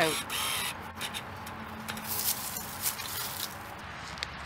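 A serrated hand digger scraping and chopping into loose sandy soil in short, irregular strokes, after a brief high tone near the start.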